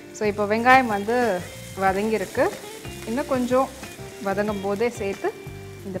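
Food sizzling and frying in a pan as it is stirred with a wooden spatula, with a woman talking over it.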